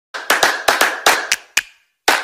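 About eight sharp hand claps in a quick, uneven rhythm, the opening of an intro music track. They break off suddenly shortly before the end.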